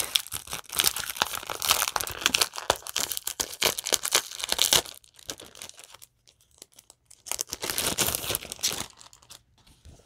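Gift wrapping being torn open and crumpled by hand. There is a long stretch of tearing and crinkling, then a shorter second burst a few seconds later.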